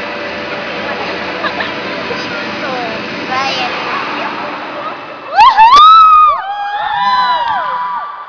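Chatter and murmur echoing in a large gym hall, then about five seconds in loud, high-pitched shouts from spectators close by. The shouts rise, hold and fall, and several voices overlap near the end.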